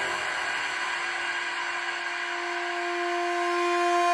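Breakdown in a techno track: the kick and bass drop out, leaving a single held synth tone over a faint hiss, slowly swelling toward the end.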